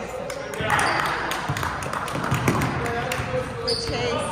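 A basketball bouncing on a gym floor as players dribble and move during a game, with many short sharp knocks. Indistinct voices of players and spectators sound through it, echoing in a large gym.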